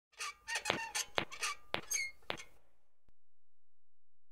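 Intro sound effect: a quick run of about eight short, sharp, pitched clicks that stops about two and a half seconds in.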